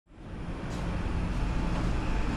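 Steady low background rumble fading in from silence, with no clear event in it.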